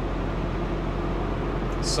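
Steady engine and road noise inside a Kenworth semi-truck's cab while cruising on the highway, a constant low hum under an even rush.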